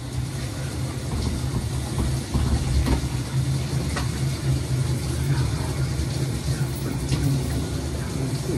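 A shower running: a steady hiss of falling water over a low rumble.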